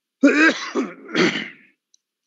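A man clearing his throat in two short, rough bursts about a second apart.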